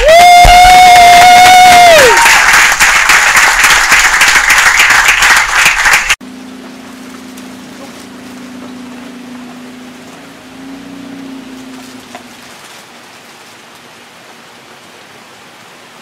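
A loud, high-pitched scream held for about two seconds and falling away at the end, then clapping and excited noise that cut off suddenly about six seconds in. After that only a faint low hum remains.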